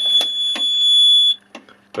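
Fire alarm sounder sounding a steady, high-pitched continuous tone that cuts off suddenly about a second and a half in as the fire alarm panel is reset. A couple of short clicks come in the first half second.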